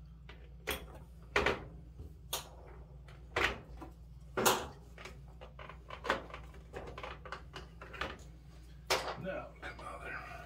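Sharp plastic knocks and clicks from a Maytag dryer's control console being handled and pried up, about seven or eight separate knocks spread through, over a steady low hum.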